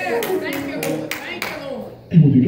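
Hand clapping in a steady rhythm, about five claps at roughly three a second, with a faint voice underneath, dying away near the end.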